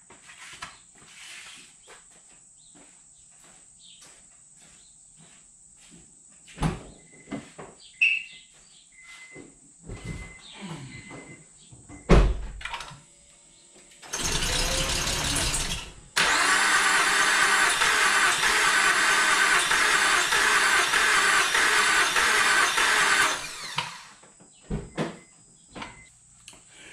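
A few thumps and a short run of high beeps, then a 2006 Honda Accord's engine cranked over twice, briefly and then for about seven seconds, without starting. The cranking is what the mechanic takes for a lack of compression, with a blown head gasket or a slipped timing belt as the suspected cause.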